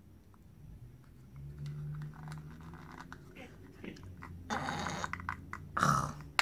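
Small handling noises from a black plastic pressed-powder bronzer compact: a short rustle with light clicks about four and a half seconds in as it is turned over and opened, and a sharper noise near the end.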